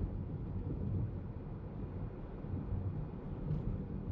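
Road and suspension noise inside a Lexus RX F Sport's cabin as it drives over a rough, bumpy road in normal suspension mode: a steady low rumble.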